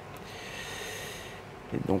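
A breath close to the microphone, a soft hiss lasting about a second, followed near the end by a man starting to speak.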